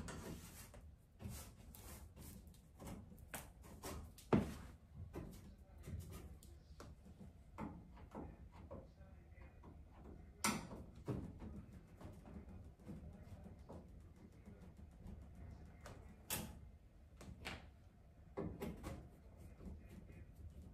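Faint, scattered clicks, taps and scrapes of hand tools working screws out of a clothes dryer's door, with a few sharper knocks on the metal, the loudest about four seconds in and again about ten seconds in.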